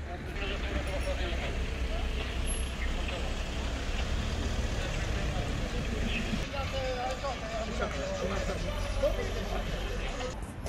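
A vehicle engine running, a low steady rumble, with people talking in the background.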